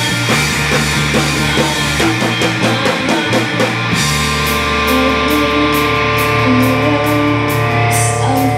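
Live rock band: electric guitar and drum kit playing loudly. About halfway through, the choppy rhythmic chords and drum hits give way to held guitar notes over a sustained low note, with a steady run of cymbal strokes.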